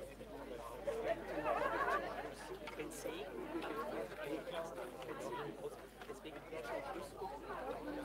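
Indistinct chatter of several people talking at once at a distance, overlapping voices with no clear words.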